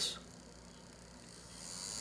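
Small DC hobby motor spinning up about one and a half seconds in, then running with a steady thin, high whir as its MOSFET driver is switched on.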